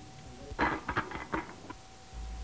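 Quartet Simplicity Series 5 voice-controlled environmental control unit giving a short run of clicks, starting about half a second in: the unit's signal that the command is done and it is out of the system, waiting to hear its name again.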